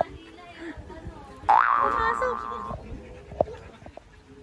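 A cartoon-style "boing" sound effect, starting suddenly about a second and a half in with a quick upward swoop in pitch and then holding a twangy tone for just over a second. A short sharp click follows near the end.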